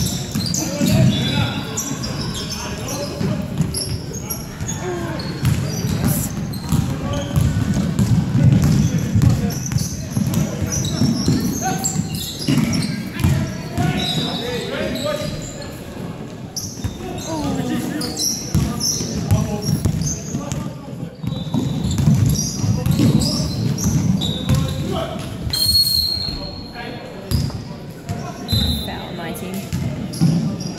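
Basketball bouncing on a hardwood gym floor during play, with repeated dribbling thuds and a few short high sneaker squeaks, amid voices echoing in the large hall.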